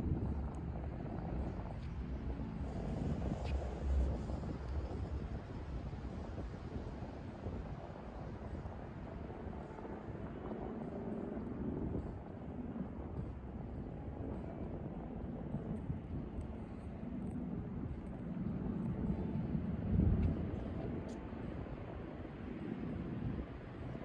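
Steady low outdoor rumble with wind buffeting the microphone, swelling briefly about four seconds in and again around twenty seconds.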